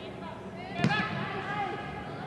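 A soccer ball kicked once, a sharp thud about a second in, with players' voices calling out across an echoing indoor turf hall.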